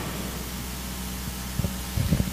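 Steady hiss with a low electrical hum, the background noise of a microphone recording in a pause between spoken phrases, with a couple of faint clicks about one and a half seconds in.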